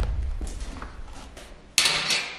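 Cardboard shipping box being handled during unboxing. A low thud dies away, then a sharp rustle of cardboard comes near the end.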